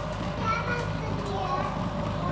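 Several children's voices calling and chattering at once, overlapping and none of them clear, over a steady low hum.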